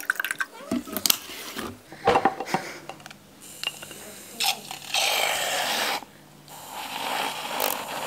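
Water poured from a plastic bottle into a glass jar with a few clicks, then a small handheld battery mixer wand whirring in the green drink. It runs for about a second, stops briefly, then starts again and keeps going.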